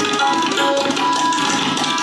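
Solo tabla played in a fast, dense stream of strokes on the pair of drums, with a harmonium playing the steady repeating accompanying melody (lehra) underneath.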